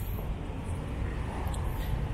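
Steady low background rumble of outdoor ambience with no distinct events.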